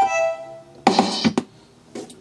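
Yamaha PSR-172 portable keyboard playing through its built-in speakers: a sustained synthesized note that fades out, then a few short percussive hits about a second in.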